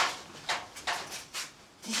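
Four short scuffing or rustling noises about half a second apart, from someone moving about.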